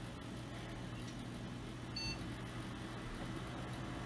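Faint steady hum of a desktop computer's fans running, with a single short high beep about two seconds in: a BIOS POST beep, the sign that the self-test passed after the video card was reseated.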